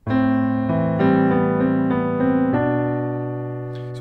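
Piano playing a short phrase: left-hand A minor 7 notes under a right-hand melody. A quick run of single notes over the first two and a half seconds ends on a held chord that slowly fades.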